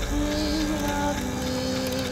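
Slow trailer music: long held notes that step down in pitch, over a low rumble.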